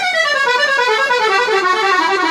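Valentini Professional piano accordion with cassotto (tone chamber) playing a fast run of notes that steps steadily downward in pitch, its reeds giving a full, horn-like tone.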